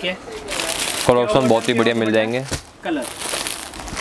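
Clear plastic packaging on folded suits crinkling as the packs are handled and laid down, in two stretches about three seconds apart.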